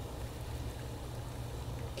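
Steady low background hum with a faint even hiss, and no distinct sounds.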